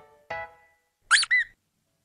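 Cartoon rubber-duck sound effects: two short pitched toots in quick succession, then about a second in two quick high squeaks that rise and fall.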